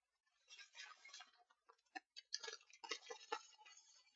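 Faint, irregular clicking of computer keyboard keys as code is typed, a run of separate keystrokes.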